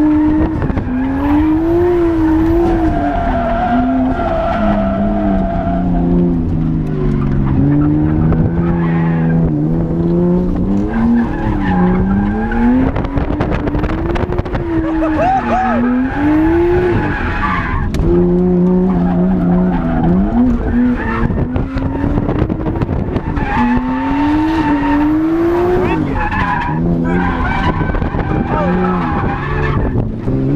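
Nissan R32 Skyline GTS-t drift car heard from inside the cabin, its engine revving up and dropping back again and again through a drift run, over the noise of skidding tyres.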